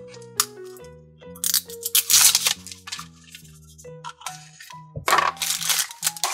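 A plastic Mashems blind capsule being twisted open and its figure pulled out in a plastic bag: two clusters of plastic clicks and crinkling, one about a second and a half in and another near the end. Background music with steady notes plays throughout.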